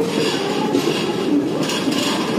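Passenger train running along a station platform, heard from inside the coach: a steady rumble of wheels on the track, with a couple of brief swells of higher rattling noise.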